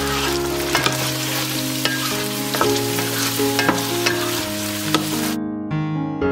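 Okra pieces sizzling in hot oil in a nonstick pan while a wooden spatula stirs them, knocking against the pan about once a second. The sizzle cuts off suddenly near the end, leaving soft piano music.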